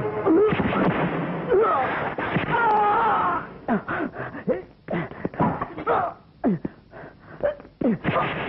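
Fight-scene soundtrack: wavering wailing cries for the first few seconds, then a quick run of short, sharp blows and grunts, many falling in pitch, as two men grapple on the floor.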